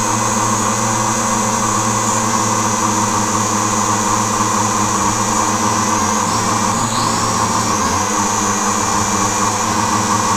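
MJX X600 hexacopter's electric motors and propellers running in flight, recorded from the camera on board: a steady high whine over a low buzz, dipping briefly in pitch about seven seconds in as the throttle changes.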